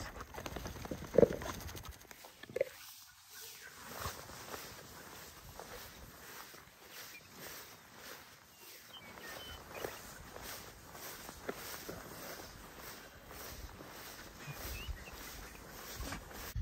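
Footsteps swishing through tall meadow grass at a steady walking pace, with a short sharp sound about a second in.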